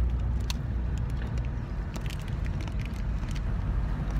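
Steady low rumble of a car cabin, with a few short sharp crunches scattered through it as a crunchy sesame seed snap bar is bitten and chewed.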